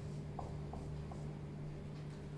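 Marker pen writing numbers on a whiteboard: a few faint short strokes and squeaks over a steady low room hum.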